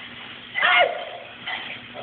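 A short vocal outburst from a person about half a second in, its pitch dropping at the end.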